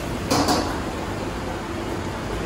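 Steady background noise of a working stall kitchen, with two quick knocks of cookware close together near the start.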